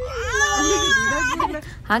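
A baby crying: one long high wail lasting about a second, with a lower voice faint underneath.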